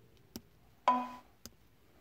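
A sharp click, then a short electronic chime that begins suddenly and fades within about half a second, then another click: button presses and a beep while a key-programming prompt is answered.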